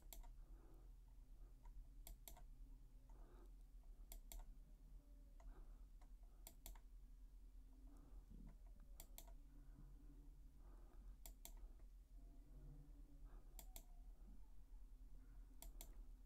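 Near silence with faint computer clicks: a sharp double click about every two seconds as the on-screen document is paged through, over a low steady hum.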